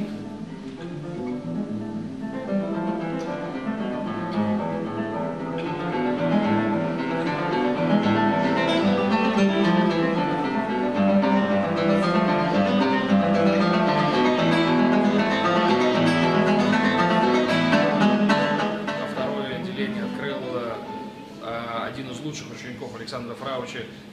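Solo classical guitar played in concert: a dense flow of plucked nylon-string notes that swells louder about a quarter of the way in and fades down near the end.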